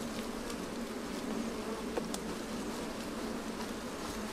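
A colony of wild honeybees on an open comb buzzing steadily as a low, continuous hum. A brief faint click comes about halfway through.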